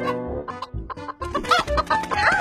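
Cartoon hen clucking over background music, growing louder and busier about one and a half seconds in.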